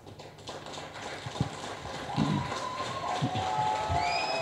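Scattered audience applause, building gradually as people come up to the stage.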